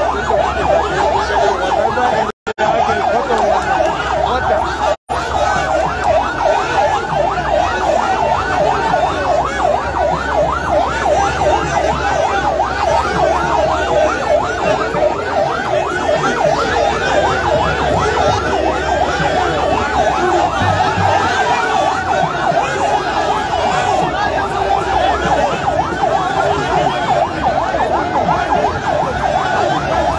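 A fast warbling siren sounds on and on over the noise of a dense crowd. The audio cuts out twice, briefly, a few seconds in.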